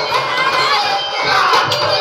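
A crowd of children shouting and cheering together, loud and overlapping, with music running on underneath.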